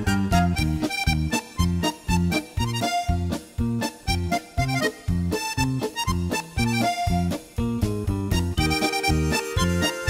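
Instrumental break of an Italian liscio dance tune: a button accordion plays the melody over a steady, bouncing accompaniment of bass notes and short chords.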